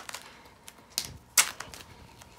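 Adhesive tape and a fabric band being handled and wrapped around the waist: a few sharp crackles and clicks over a faint rustle.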